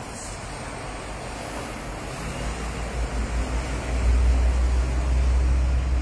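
Wind buffeting the microphone: a low rumble that grows stronger after about two seconds, over a steady hiss.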